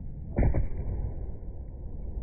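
Skateboard landing back on the bowl after an air, a loud impact about half a second in, then its wheels rolling on the bowl surface with a steady low rumble.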